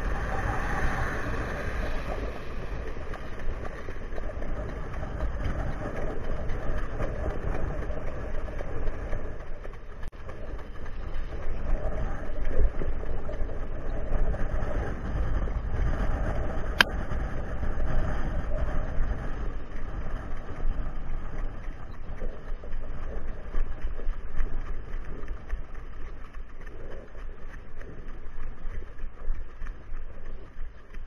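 Wind buffeting the microphone over the steady rumble of a harness-racing sulky rolling over the dirt track behind a trotting horse. A single sharp click is heard about 17 seconds in.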